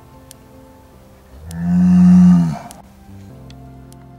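A head of cattle moos once, a long call of about a second starting a little over a second in, dipping in pitch as it ends, over soft background music.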